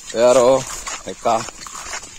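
A man's voice: two short utterances, the first longer and louder, the second about a second later.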